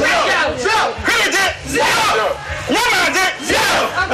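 A group of men shouting loud calls one after another in a ritual invocation of curses, several voices together.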